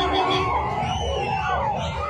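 A large crowd shouting and screaming, with many voices overlapping in a continuous din.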